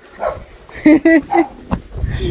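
A dog barking, a few short barks about a second in, followed by a sharp tap near the end.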